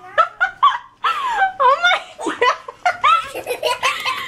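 Repeated bursts of hearty laughter, high-pitched and rising and falling, through the whole stretch.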